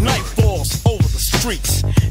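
Hip-hop music: a drum beat with short vocal phrases over it.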